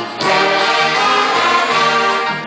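A youth big band playing: saxophones, trumpets and trombones with keyboard, and young singers on microphones, in sustained full chords. There is a brief dip at the very start before the band comes back in at full level.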